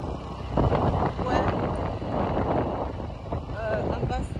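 Car driving along, its road and engine noise mixed with wind rushing over the microphone, with a person's voice near the end.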